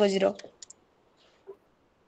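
A woman's voice over a video call trails off in the first half-second, then the call line goes silent apart from two brief clicks and a faint blip.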